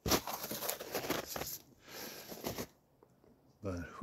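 Close rustling and crunching of someone moving through dry brush, pine needles and old snow, in irregular bursts for nearly three seconds before it stops. A man's voice starts just before the end.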